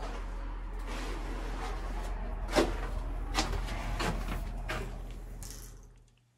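A door being opened and gone through: a few separate knocks and clicks about a second apart over a steady low rumble, fading out near the end.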